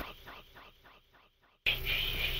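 Whispered vocal of an electronic track dying away in a series of fading, evenly spaced pulses, about four a second. Near the end the louder looped layer comes back in abruptly.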